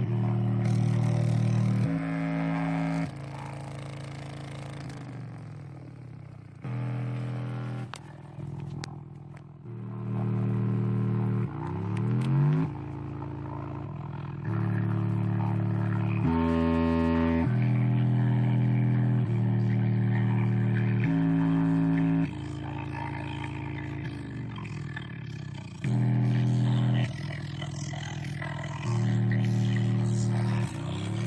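Bass test tones played through a pair of Indiana Line TH 210 bookshelf speakers mounted on a car dashboard: steady low notes held a few seconds each, stepping from pitch to pitch, with rising sweeps about twelve seconds in and near the end.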